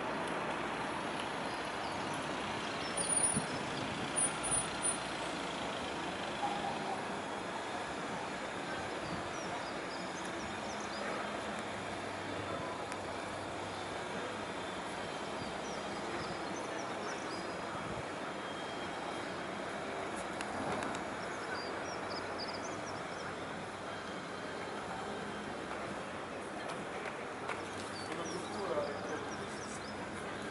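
Steady city road traffic noise from passing cars and trucks, with a few short high squeaks about three to five seconds in.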